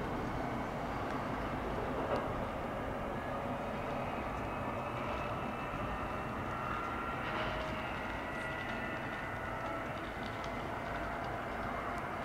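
S-Bahn electric multiple unit pulling away from the station, a steady rumble of wheels on rails with a faint electric whine that rises slowly in pitch as it gathers speed.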